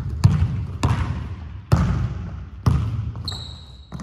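Basketball dribbled on a hardwood gym floor: about five sharp, echoing bounces at an uneven pace. Near the end comes a short, high, steady squeak, typical of a sneaker sole on the hardwood as the player drives for a shot.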